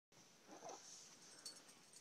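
Faint sounds of a chihuahua moving against a stuffed toy close to the microphone, with a brief click about one and a half seconds in, over a steady hiss.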